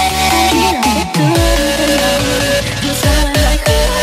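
Vinahouse electronic dance music: a synth melody over heavy bass notes that slide down in pitch, repeated several times.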